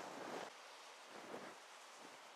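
Faint wash of sea and wind on a shingle shore, swelling briefly at the start and again just over a second in.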